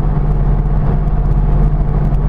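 Interior sound of a Mercedes-Benz diesel car cruising: a steady low engine drone mixed with road and tyre noise, heard inside the cabin.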